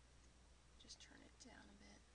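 Near silence with a steady low hum, and a woman's voice softly half-whispering a word or two about a second in.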